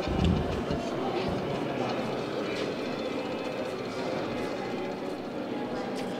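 Indistinct murmur of many visitors' voices and movement, echoing in a large stone hall, steady throughout, with a low thump at the very start.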